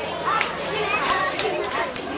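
Young children's voices chattering and calling out indistinctly, with a few sharp clicks scattered through.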